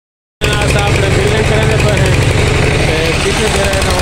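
Petter diesel engine running steadily with a fast, even firing beat, belt-driving the dynamo that powers a stick-welding plant. The sound cuts in abruptly about half a second in.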